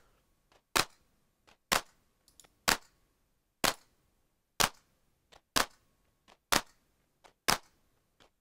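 An electronic drum-machine clap, generated with Emergent Drums and run through a snappy dry clap chain with erosion, overdrive and grain delay, playing on its own. It hits sharply about once a second, with fainter short ticks in between.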